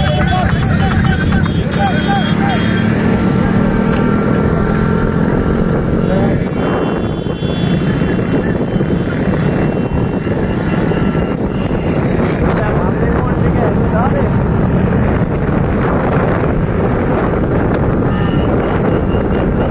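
A motor engine running steadily and loudly, with wind noise on the microphone; voices call out a few times over it.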